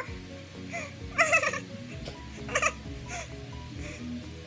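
Background music, with two short, high-pitched pained whimpers over it, about a second in and again near the middle, as a peel-off mask is pulled from the skin.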